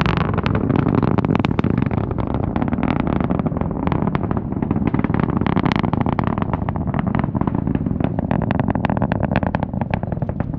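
Falcon 9 rocket's nine first-stage Merlin engines heard from miles away during ascent: a continuous, loud low rumble shot through with rapid crackling.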